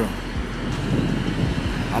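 Steady low rumble of passing road traffic, outdoors.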